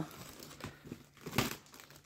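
Clear plastic wrap and packing tape on a cardboard box crinkling as a knife slits the seam and the flaps are pulled apart, quietly, with a few short crackles, the sharpest about one and a half seconds in.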